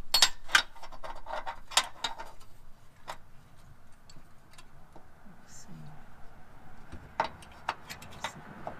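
Irregular metallic clicks and taps from a fish wire and a square bolt plate being wiggled into a hole in a car's steel frame rail. They come quickly for the first couple of seconds, then sparser, with a few more near the end.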